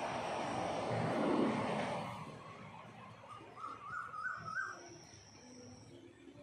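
Outdoor background noise that swells and fades over the first two seconds, loudest about a second and a half in, the way a passing vehicle goes by; then, about three and a half seconds in, a quick run of about five short rising calls from an animal.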